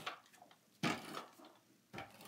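ATG adhesive tape dispenser pulled along a sheet of patterned paper: a short scrape about a second in, with brief clicks at the start and near the end. The dispenser's tape roll is running out.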